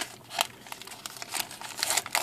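Plastic-foil Pokémon trading card booster pack wrapper crinkling and tearing as it is handled and ripped open, in quiet, irregular crackles.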